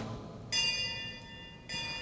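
A single high-pitched, bell-like chime that starts suddenly about half a second in and rings for about a second before cutting off.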